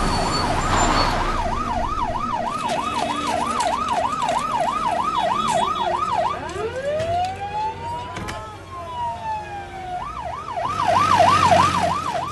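Ambulance siren sounding a fast yelp, about three up-and-down sweeps a second. About six seconds in it slows into one long wail that rises and falls, then it switches back to the fast yelp near the end.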